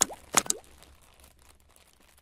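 Two quick popping sound effects from a logo-reveal animation, each with a short upward swoop in pitch, about half a second apart, then a faint fading tail.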